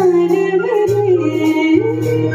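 A woman sings live into a microphone, drawing out a long, wavering melismatic note. Under her voice a band plays held bass notes and light, regular drum beats.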